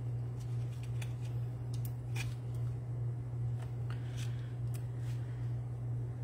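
Scattered faint clicks and light taps, irregularly spaced, as adhesive-backed shimmer gems are lifted off their sheet with a pick-up tool and pressed onto a paper card, over a steady low hum.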